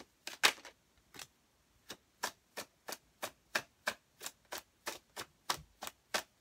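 Tarot deck being overhand-shuffled in the hands: a run of sharp card slaps, uneven at first, then settling into about three a second.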